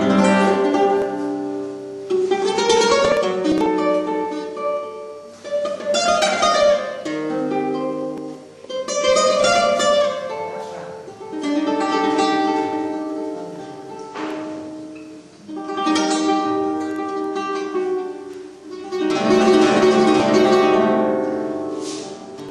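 Solo flamenco guitar playing phrases. Each phrase opens with a loud, sudden chord that rings and fades, about every three to four seconds.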